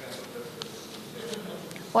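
Quiet ambient sound of a meeting room: a faint murmur of voices over a steady hiss, with a few faint clicks.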